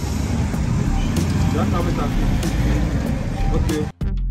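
Roadside street ambience: steady traffic noise with people's voices talking over it.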